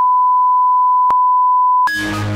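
A single steady electronic beep at about 1 kHz, one pure unbroken tone, with a sharp click about a second in; it cuts off suddenly near the end as music starts.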